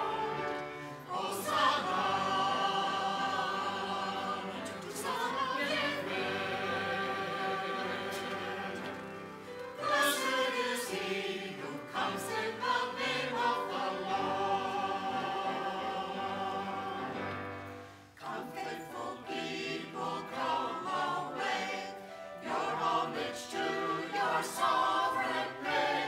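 A mixed church choir of men and women singing an anthem in long held phrases, with short breaks between phrases about a second in, around ten seconds in and around eighteen seconds in.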